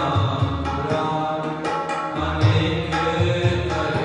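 Harmonium playing sustained chords, accompanied by tabla with deep, pitched bass-drum strokes, in Sikh shabad kirtan.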